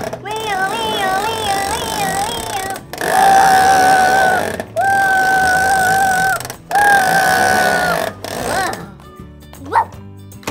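A man imitating a fire-engine siren with his voice: a warbling wail first, then three long held notes, each sagging in pitch as it ends.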